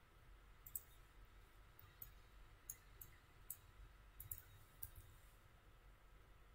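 Faint, scattered clicks of a computer mouse, about nine in all, some in quick pairs, over a near-silent low hum.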